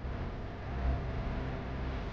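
Jet airliner cabin noise in flight: a steady low rumble with hiss.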